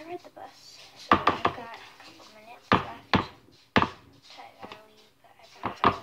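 Sharp knocks of a hard object against a mixing bowl while slime is being mixed: about seven clacks at uneven spacing, several in quick pairs.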